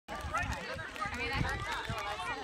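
Faint voices of several people talking and calling out at a distance, overlapping, over a low rumble.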